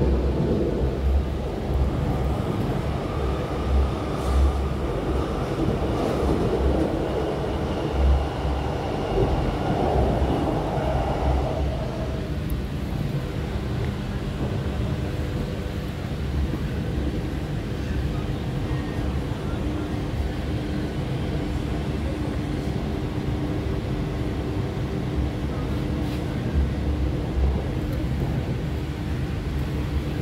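RER A suburban train running along the track, heard from inside the carriage: a steady rolling noise over a low rumble that swells unevenly, heavier in the first dozen seconds and again near the end.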